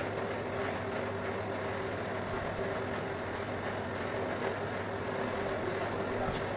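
Electric motor-driven churma-baati grinding machine running with a steady mechanical hum.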